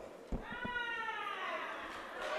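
A single high-pitched cheering cry from a woman in the audience, falling slowly in pitch over about a second, after a couple of soft knocks.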